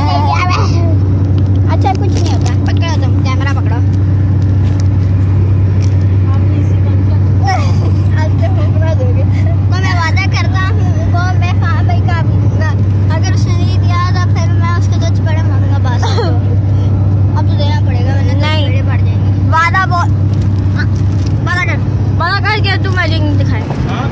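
Car interior noise at motorway speed: a steady low drone from engine and road, with children's voices calling out over it again and again.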